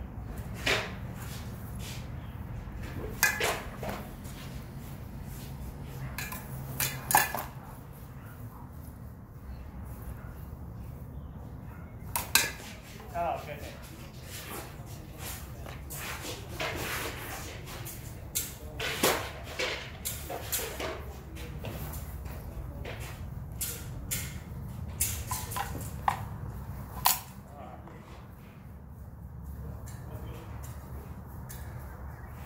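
Steel sparring blades, a rapier and a jian, clashing in sharp metallic clinks and scrapes, scattered irregularly through the exchanges, sometimes two or three strikes in quick succession. A steady low rumble runs underneath.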